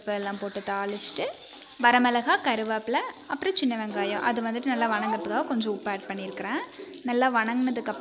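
Shallots and curry leaves sizzling in hot oil in an aluminium kadai, stirred with a steel spoon. A pitched, voice-like sound runs over the frying.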